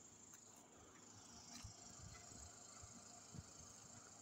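Near silence: faint outdoor background with a faint steady high-pitched hiss.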